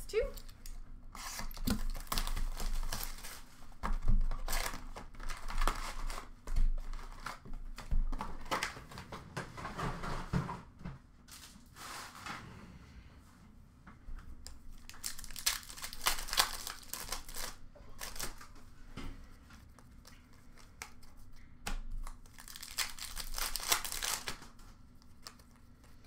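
A 2020-21 Upper Deck Series 2 hockey retail box being torn open by hand and its card packs being handled and unwrapped, with irregular bursts of tearing and wrapper crinkling.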